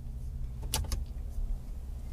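Low steady hum of the 2017 Ford F-150's 5.0-liter V8 idling, heard from inside the cab, with a couple of short clicks near the middle.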